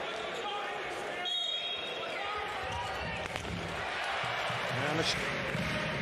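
A handball being bounced on the hard indoor court during play, over the steady din of a large arena crowd.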